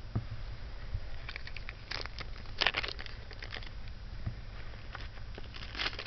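Plastic packaging rustling and crinkling, with small clicks as jewelry is handled and set down. It comes in short bursts, loudest about two to three and a half seconds in, over a steady low hum.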